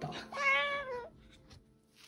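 A Solomon (Ducorps's) cockatoo giving one short, whining call of under a second that wavers slightly and drops in pitch at the end.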